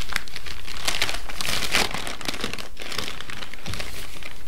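A large paper mailing envelope crinkling and rustling as it is opened and handled: a run of quick crackles, busiest about a second and a half in.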